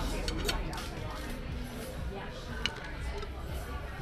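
Fork clinking against a plate a few times while food is mixed together. Café background of voices and music runs underneath.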